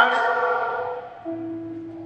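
Background keyboard music holding sustained chords: one chord fades away over the first second, and a new low held note comes in about a second and a half in.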